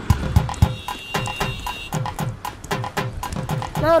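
Background film score with a fast, even percussion beat: drum hits that fall in pitch, about four a second, and sharp clicks, with a high held tone for a second or so in the middle. A man's voice calls out right at the end.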